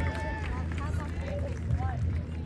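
Spectators in the stands talking and calling out, several voices overlapping, over a steady low hum.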